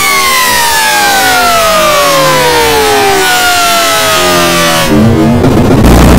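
Distorted, effects-processed cartoon soundtrack: a long pitched tone glides steadily downward over about three seconds, like a siren winding down, over a musical bed, with a second shorter falling tone after it. About five seconds in, it breaks into loud, harsh noise.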